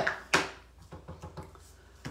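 A plastic ink pad handled with a blending brush on a craft desk: one sharp knock about a third of a second in, then a few faint taps that die away.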